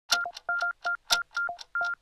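A quick, uneven run of about six short electronic beeps, each starting with a sharp click, in two pitches, a high one and one an octave lower.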